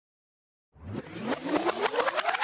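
Silence, then about three quarters of a second in an outro sting begins: a sound rising steadily in pitch over fast ticking, in the manner of a revving engine, leading into drum-heavy music.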